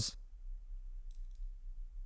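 A few faint, small metallic clicks just past a second in, from a watchmaker's screwdriver turning a tiny screw in a mechanical chronograph movement.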